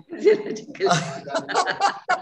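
A person chuckling and laughing, mixed with a few spoken sounds.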